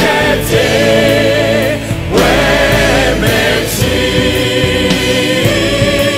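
Large choir singing a Christian song in full voice, holding long notes with a slight waver, over a steady low accompaniment.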